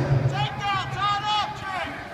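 Speech only: the tail of a public-address announcement, then a raised voice calling out with unclear words over the background noise of an arena.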